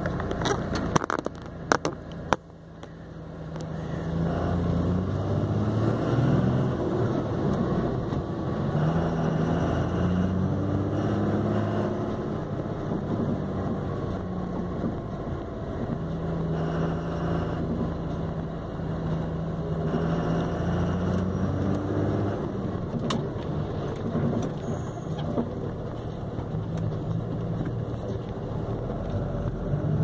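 Truck engine heard from inside the cab while driving in slow traffic, its pitch stepping up and down several times as the truck speeds up and slows. There are a few sharp clicks in the first couple of seconds.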